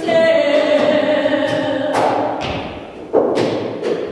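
Unaccompanied voices holding sustained notes, broken by a sharp thump about two seconds in and a louder one a second later, with rougher, noisier vocal sound after them.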